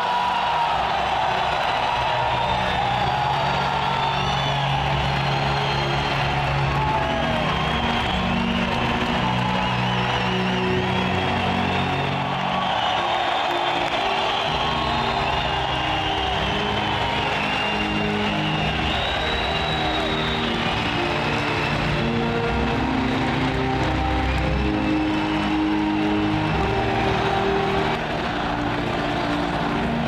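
Music playing over a large arena crowd cheering and whooping, steady and loud throughout.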